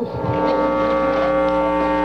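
A steady, loud electronic tone with many overtones over a low hum, ringing through the public-address system: microphone feedback while the handheld mic is live but unused.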